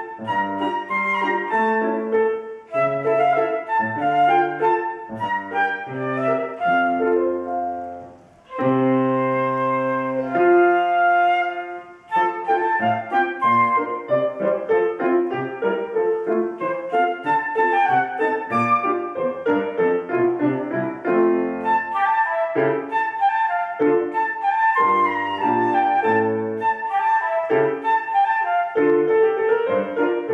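Transverse flute and grand piano playing a classical duet, the flute carrying the melody over piano accompaniment. About eight seconds in the music dips briefly, then long held notes sound for a few seconds before quicker passages resume.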